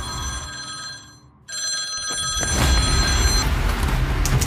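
A high, steady ringing tone made of several fixed pitches, like a telephone bell, sounding in two stretches split by a sudden brief cut just over a second in, over a low rumbling drone of film sound design.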